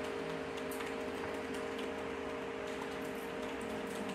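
Room tone of a quiet lecture room: a steady hum made of several constant tones over a faint hiss, with a few faint scattered clicks.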